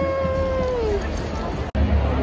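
A person's voice holds one high note for about a second and a half, sliding down at the end, over the crowd noise of an arena.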